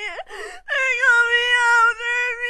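A long, wavering wail held on one steady pitch, cut off briefly about half a second in and then held again for over a second.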